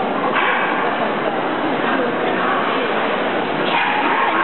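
Dogs barking and yipping amid the steady chatter of a crowded show hall.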